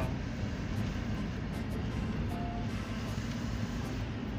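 Steady road and engine noise of a moving car, heard from inside the cabin, with one short faint tone about halfway through.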